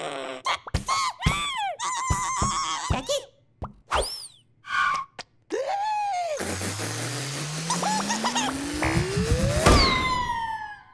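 Cartoon sound effects: a run of springy boings in the first three seconds, then a long steadily rising stretching sound as the bubblegum is pulled, ending in a loud sudden pop near the end.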